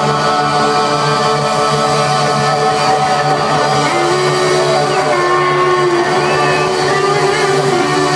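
Live rock band playing with electric guitars, saxophones and drums, on long held notes with little or no singing; the held pitch shifts about halfway through and again near the end.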